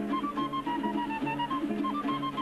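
Instrumental music: a quick melody of short, repeated notes over steady lower notes.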